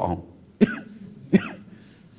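A person coughing twice, two short coughs under a second apart.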